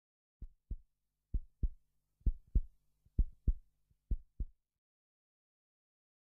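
Heartbeat sound effect: five deep lub-dub double thumps a little under a second apart, growing louder over the first few beats and easing slightly on the last.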